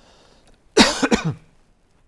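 A man coughing: one short fit of two or three coughs, loud, falling in pitch, under a second long.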